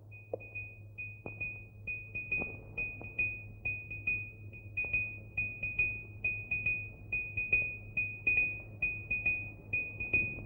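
A high, steady electronic tone with a quick pulsing of about three beats a second, a comic film-score cue, over a constant low soundtrack hum.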